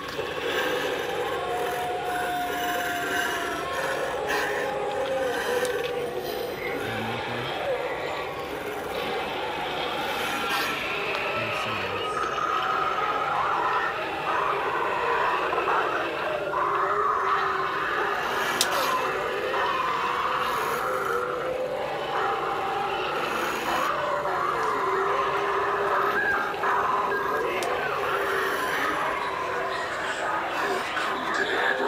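Indistinct voices with some music underneath, at a steady level throughout and with no clear words.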